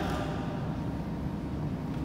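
Steady low rumble of background room noise, with no distinct footfalls or other impacts standing out.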